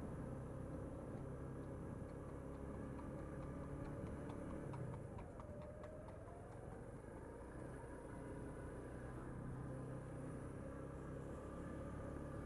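KSR Moto GRS 125 motorcycle engine running steadily at low road speed, heard muffled through a helmet microphone as a low hum with a few faint ticks.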